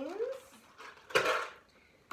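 One short plastic clatter a little over a second in: a water bottle filled with dry beans knocking and rattling against a plastic bucket as it is put down into it.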